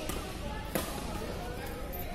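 A badminton racket strikes the shuttlecock once about three-quarters of a second in, a sharp crack echoing in a large sports hall, over a steady background of voices.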